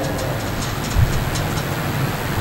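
Steady background noise, an even hiss with some low rumble, in a pause between spoken phrases, with a brief low thump about a second in.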